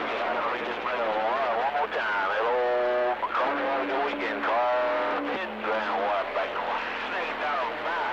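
A station's voice coming in over a CB radio's speaker through a haze of static, too distorted to make out words. A few steady, held tones sound through it in the middle.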